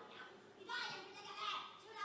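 Many overlapping voices praying aloud at once, a congregation speaking in tongues together, with louder surges partway through.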